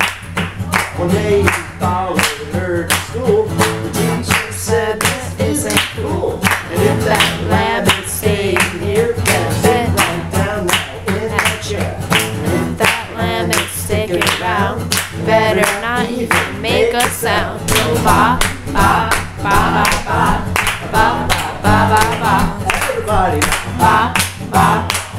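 Acoustic guitar strummed while a man sings, with several people clapping along on a steady beat.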